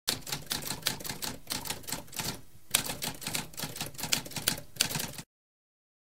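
Typewriter keys struck in a rapid run of clicks, with a short break about halfway through, stopping suddenly a little after five seconds in.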